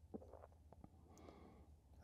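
Near silence: room tone with a low hum and a few faint small clicks, the clearest just after the start.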